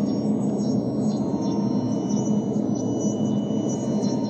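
Steady ambient background music: a continuous, droning gong-like sound with no clear beat.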